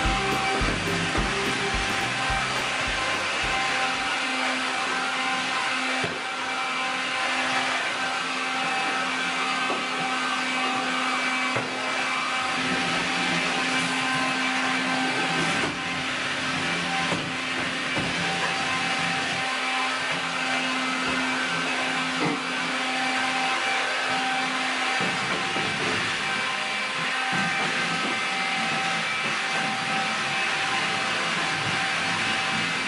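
Vacuum cleaner running steadily, a constant motor noise with a few steady whining tones.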